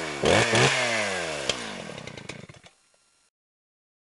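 Chainsaw engine revved in quick bursts, its pitch sagging after each, then winding down and fading out about three seconds in.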